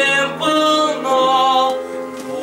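A small choir of young women's and a young man's voices singing held notes in parts.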